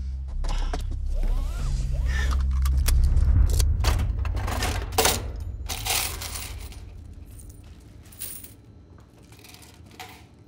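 A low steady rumble for the first few seconds, then small metal objects clinking and jingling, with the sharpest clinks around five and six seconds in, fading toward the end.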